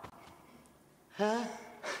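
Speech only: after a quiet second, a single short questioning 'ha?' from a voice about a second in.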